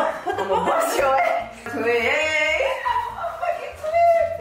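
Two people talking and laughing, with a high, bending vocal sound about two seconds in.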